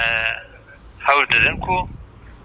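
A man's voice speaking over a telephone line, thin and cut off in the highs, opening with a drawn-out held vowel before a few broken syllables.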